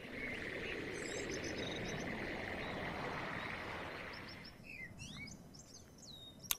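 Outdoor nature ambience from an animation's soundtrack: birds chirping over a steady insect-like drone, which eases off after about four and a half seconds, leaving a few scattered chirps.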